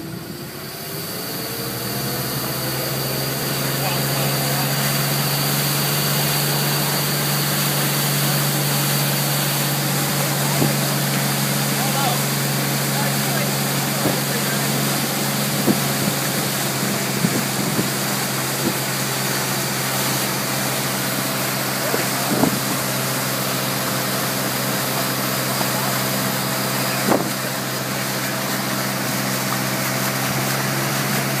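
Tow boat's engine speeding up from low throttle over the first few seconds as it pulls the rider out of the water, then running steadily at towing speed, with a constant rush of water and wind and a few short knocks.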